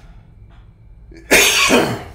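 A man coughs once, loudly, about a second and a half in.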